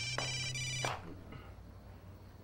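Mobile phone ringtone, an electronic tone that rings briefly and cuts off suddenly about a second in.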